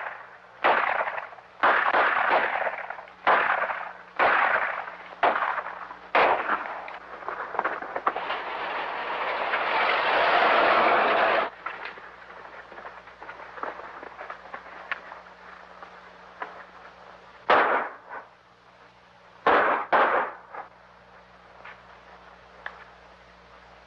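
Gunshots from an old film soundtrack: a run of about six sharp shots with echoing tails in the first six seconds. Then a rushing noise swells for a few seconds and cuts off suddenly, and three more shots come near the end.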